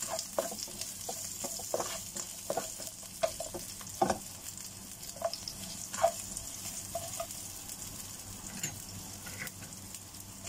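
Sliced onions and garlic sautéing in hot oil in a stainless pan: a steady sizzle with the spatula scraping and clicking against the pan as it stirs, a few sharper scrapes along the way.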